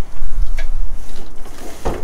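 Rummaging in a dumpster as a large nutcracker figure is pulled loose. Items shift, rustle and knock against each other, with one sharp knock near the end over a low rumble.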